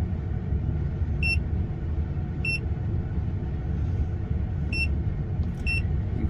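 Autophix 7150 handheld scan tool beeping at key presses: five short, high electronic beeps spaced a second or two apart, the last two close together near the end, over a steady low rumble.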